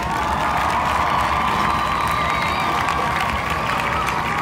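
One long, loud slurp of ramen noodles sucked in through the lips, with a steady whistling hiss of drawn-in air. This is the noisy slurping done in Japan to show that the food tastes good.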